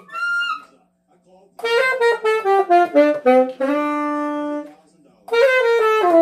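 Selmer Mark VI tenor saxophone played solo: a short high note, a pause, then a phrase of notes stepping down in pitch that ends on a long held low note. Another descending phrase begins near the end.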